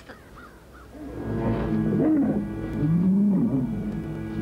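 Low animal-like calls from the film's pit creatures, rising and falling in pitch, begin about a second in. They are heard over an eerie held music score that swells at the same time.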